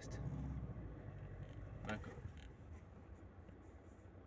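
Low rumble of a car moving off at walking pace, heard from inside the cabin. It is strongest in the first second and a half, then fades to a quieter running sound.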